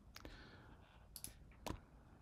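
Near silence broken by a few faint computer mouse clicks, two of them close together just after a second in.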